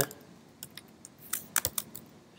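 Computer keyboard keystrokes: a scattered handful of quiet key presses, bunched in the second half, as keyboard shortcuts select a word and new code is typed.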